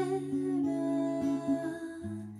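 A woman humming a melody softly over a capoed steel-string acoustic guitar, its plucked notes changing every half second or so.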